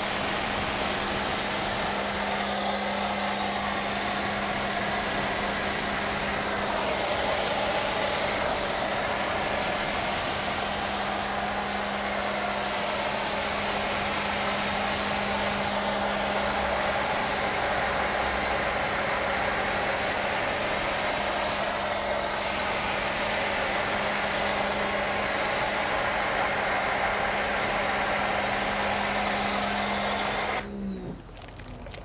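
Pressure washer running with the trigger held, spraying through a foam cannon: a loud, steady hiss of foam spray over a constant hum from the machine.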